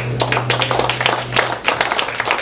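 Small audience clapping in irregular, dense claps at the end of a song, over the band's last low held note, which dies away about three-quarters of the way through.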